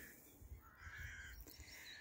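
Near silence, with faint bird calls.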